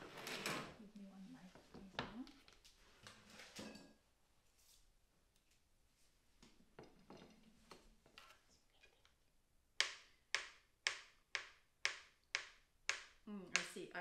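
Kitchen knife slicing carrots on a cutting board, a sharp knock with each cut, about two a second, starting near the end.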